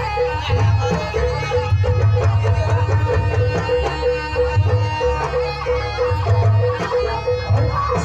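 Live East Javanese jaranan ensemble music: a shrill reed melody over a steady sustained tone, with low drum strokes repeating throughout.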